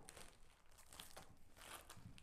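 Faint crinkling of plastic cling film being cut with scissors, with a couple of soft clicks.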